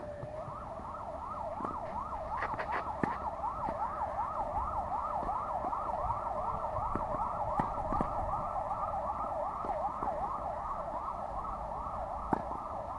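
An emergency vehicle siren in a fast yelp, sweeping up and down about three times a second. A few sharp knocks sound over it.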